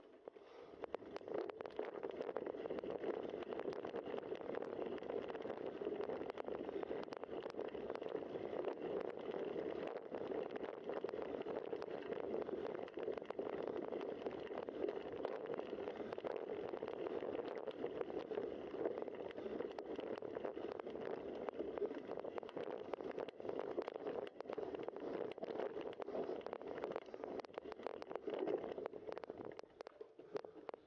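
Bicycle tyres rolling over a dirt trail: a steady gritty rumble with many small clicks and rattles from bumps. It starts just after the beginning and drops away near the end.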